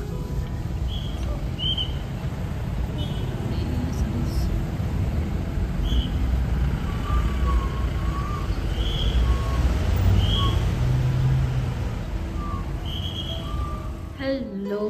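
Road traffic in a jam: a steady low rumble of idling and slow-moving cars, with short high chirps now and then.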